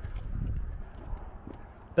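Footsteps on concrete paving, a few faint knocks over a low rumble.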